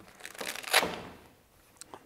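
Silver-lined softbox fabric rustling and crinkling as it is worked under its Velcro tabs at the frame corner. A rasping swell lasts about a second, strongest a little before the middle, and a faint click follows near the end.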